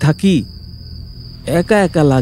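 Crickets chirping in one steady, unbroken high note as night-time background ambience.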